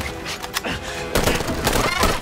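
Movie sound mix of music, with a rapid string of rifle shots starting about a second in.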